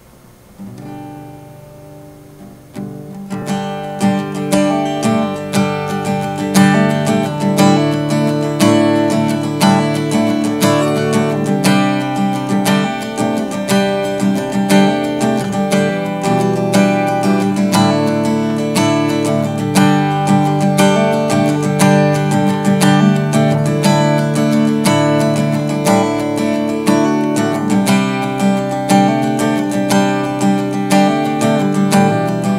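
Acoustic guitar strummed, opening softly and rising to full, steady strumming of chords about three seconds in.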